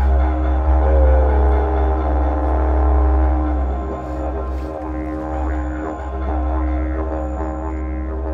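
Background music led by a didgeridoo playing a continuous deep drone, its overtones shifting slowly.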